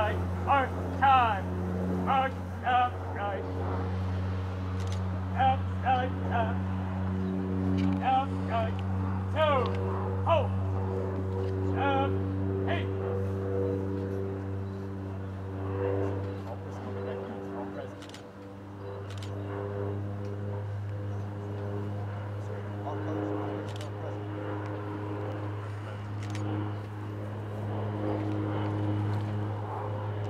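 Short shouted drill commands, several in quick succession in the first half, over a steady low hum with long held tones.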